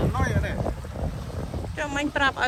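Wind buffeting the microphone in a steady low rumble, over small waves washing onto a rocky shore; a voice is heard at the start and again near the end.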